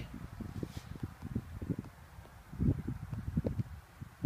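Low, irregular rumbling and bumping of wind and handling noise on the microphone, a little stronger about two and a half to three and a half seconds in.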